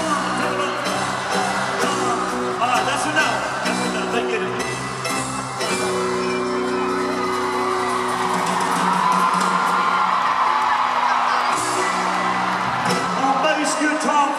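Electric bass guitar played live through a concert PA, showing off what the bass can do, with long held low notes. The arena crowd cheers and whoops over it.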